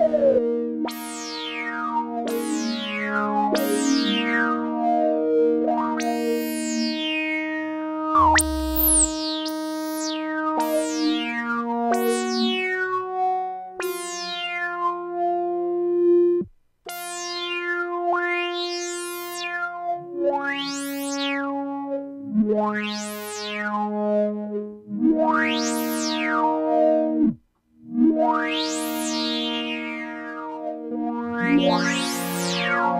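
Fender Chroma Polaris synthesizer playing sustained chords, each new chord opening with a bright resonant filter sweep that falls from very high to low, about a dozen in all. The patch is set up to show the filter stepping the instrument is known for, which comes through only slightly.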